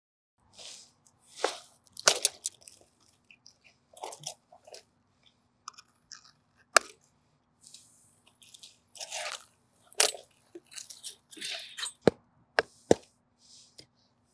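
A resin-bonded sand casting mold being worked open by hand: gritty crunching and scraping of the sand, with several sharp knocks.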